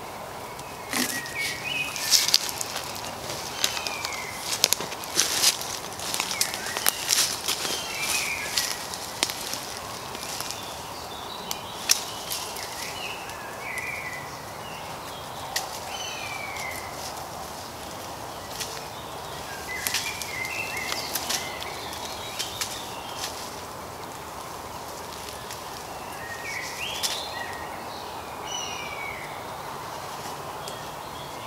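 Dry twigs and leaf litter crackling and rustling as a person handles branches and moves through woodland undergrowth, busiest in the first half. Short bird chirps sound now and then throughout.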